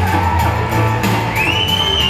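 Live music played on a nylon-string classical guitar over a steady bass line and drums. About a second and a half in, a high rising whoop comes from the audience.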